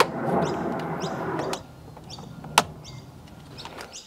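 A plastic trim removal tool prying a plastic cover off a steering wheel: a scraping, rubbing sound for about a second and a half, then a single sharp click as the clip lets go.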